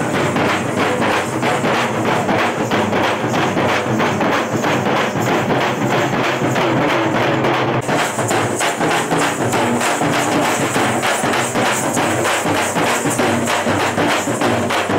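A street drum band of several large double-headed bass drums and side drums beaten with sticks, keeping up a fast, steady, unbroken beat.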